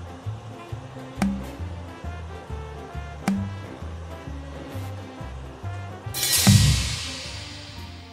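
Casino game background music with a steady pulsing bass line, cut by sharp clicks about two seconds apart. About six seconds in, a loud whooshing sound effect with a low thud sounds as the ball draw ends.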